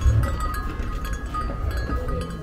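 Bell on a café's entrance door jingling as the door is pushed open, several ringing tones that sound together and die away over about two seconds, with a low thump of the door at the start.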